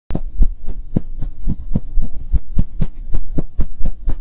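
Soundtrack of an animated logo intro: a fast, even run of deep beats, about four a second, over a low hum.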